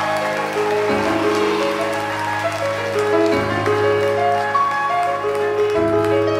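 Live rock band playing sustained chords: a low bass note that changes about every two and a half seconds, with higher held notes moving above it.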